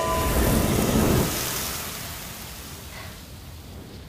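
A rushing, noisy magic sound effect, loudest in the first second and then dying away over the next two seconds as the music stops.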